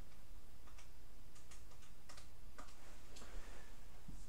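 Button presses on a handheld graphing calculator: a run of small, irregular plastic key clicks, several in quick succession, followed by a short rustle near the end.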